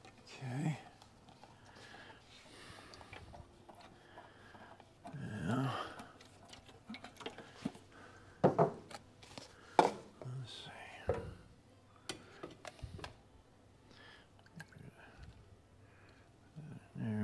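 Mumbled, half-whispered words, with a few sharp clicks and knocks from containers and lids being handled and set down on a workbench. The two loudest knocks come a little past halfway, about a second apart.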